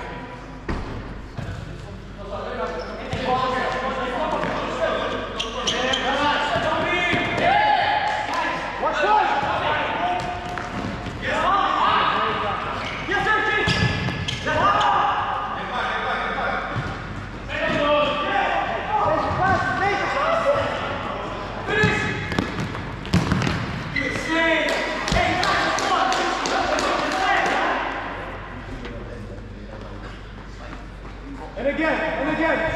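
Players' shouts and calls over the thuds of a futsal ball being kicked and bouncing on a hard indoor court, echoing in a large sports hall.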